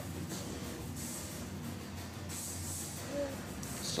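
A televised wrestling broadcast playing faintly in the background: a steady hissy murmur with a brief faint voice about three seconds in.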